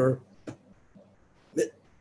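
A man's lecturing voice breaking off into a pause. The pause holds a faint click about half a second in and a brief mouth sound near the end.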